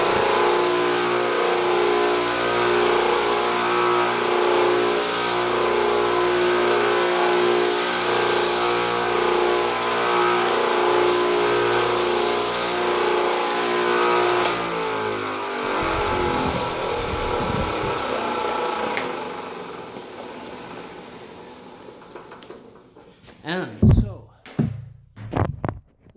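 Bench belt sander running steadily, with a brief brighter grinding hiss now and then as a drill bit's cutting edge is touched to the belt to dull it slightly. The motor is then switched off and winds down, its pitch falling over several seconds. A few knocks and handling sounds come near the end.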